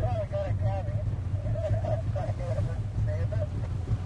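Small boat's outboard motor running with a steady low drone, under indistinct talk from people aboard.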